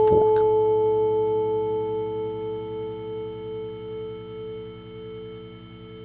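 Electric guitar's open A string ringing and slowly fading while it is tuned at its peg against a high A reference tone. A steady pure tone sits above the string's lower notes.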